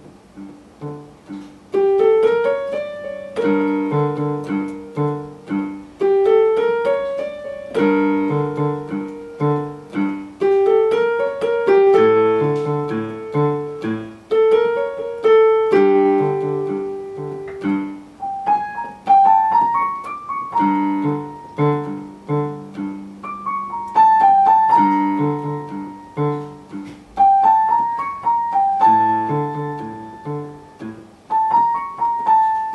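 Digital piano played through a simple student piece, with repeated low left-hand notes under a right-hand melody. It gets louder about two seconds in, and the melody climbs higher in the second half.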